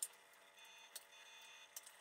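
Small pruning snips cutting larch bonsai roots: a few short, faint clicks, the loudest right at the start and the others about a second in and near the end, over near-silent room tone.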